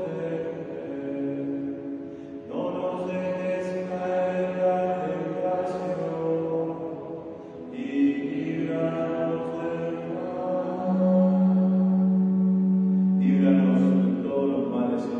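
A priest chanting a liturgical prayer solo, in sung phrases a few seconds long. One phrase ends on a long held note near the end.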